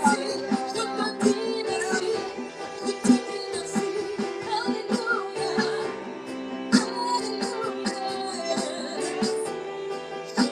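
Live worship song: a woman singing lead into a microphone with backing singers, over keyboard chords and an electronic drum kit keeping a steady beat.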